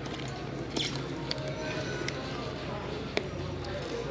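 Retail store ambience: faint background music and the murmur of the store, with a few light clicks and taps as small wallets are handled on metal display hooks.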